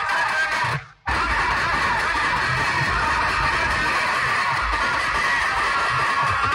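Loud music played through a large DJ speaker stack, with deep bass beats under it. It cuts out for a moment just under a second in, then carries on.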